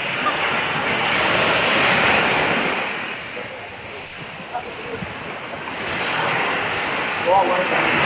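Surf washing onto a beach, mixed with wind on the microphone. The noise swells about a second or two in, eases off, then builds again near the end.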